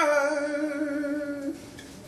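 A male singer holds one long, steady note, hummed or sung, that stops about a second and a half in.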